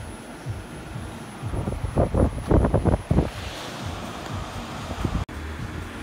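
Oxygen concentrator running while its flow dial is turned down, with gusts of wind on the microphone. After a brief dropout near the end, a steady low hum.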